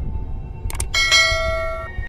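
A bell strike ringing with several steady tones for about a second, preceded by two short light hits just before it, over a low rumble.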